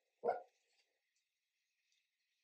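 A dog gives a single short bark about a quarter second in.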